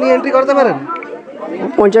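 Speech only: people talking in Bengali, with a pause of about a second between phrases.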